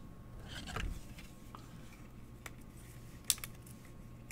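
Trading card in a clear plastic sleeve being handled: a soft rustle with a low bump a little under a second in, then a few light, sharp clicks, the loudest about three seconds in.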